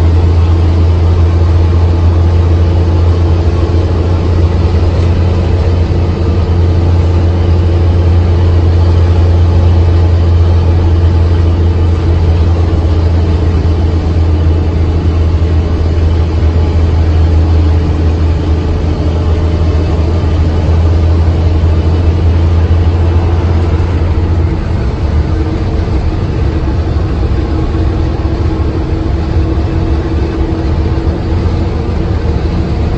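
Steady low drone of a truck's engine heard inside the cab while cruising on the highway. The deepest part of the hum drops a little near the end.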